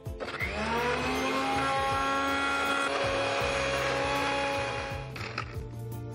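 Electric mixer-grinder running to grind a wet spice paste. The motor spins up with a rising whine, runs steadily, and is switched off about five seconds in.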